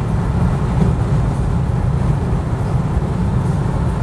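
Steady low rumble of road and engine noise heard inside the cabin of a car cruising on the highway.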